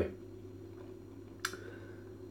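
Beer pouring from a can into a glass, faint, with one sharp click about one and a half seconds in, over a steady low hum.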